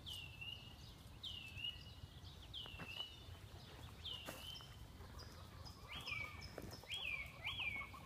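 A bird calling repeatedly and faintly: a clear call sliding down in pitch about every second and a half, changing about six seconds in to quicker, shorter calls that rise and then fall.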